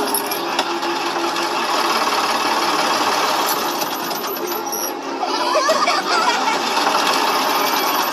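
A truck's engine running with a rapid, even rattle, heard from a film soundtrack played back through speakers. A faint voice comes in about five seconds in.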